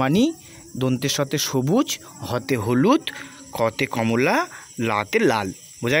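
A man's voice reciting the Bengali rainbow-colour mnemonic syllable by syllable, each word drawn out with a rising and falling pitch.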